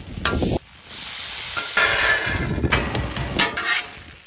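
Shredded hash browns frying in bacon grease on a Traeger Flatrock flat-top griddle, sizzling steadily, with a metal spatula scraping and pressing them against the steel top. The sound drops out briefly about half a second in, then the sizzle resumes.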